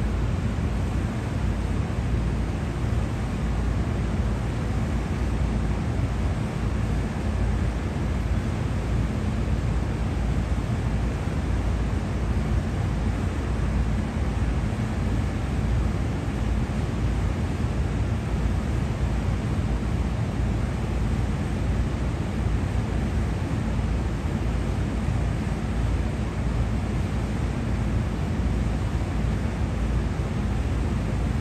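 Steady low roar of city background noise, even throughout with no distinct events.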